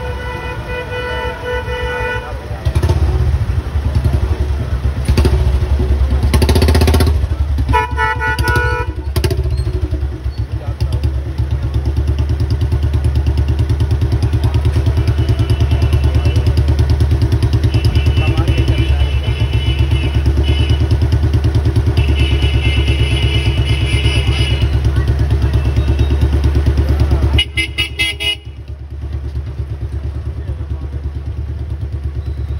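A vehicle horn sounds for the first couple of seconds, then a motor vehicle's engine runs steadily and loudly close by, with another horn blast about eight seconds in. The engine sound drops away a few seconds before the end.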